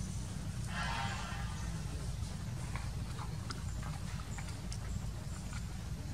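A macaque gives one short high-pitched call about a second in, over a steady low background rumble, followed by scattered small clicks.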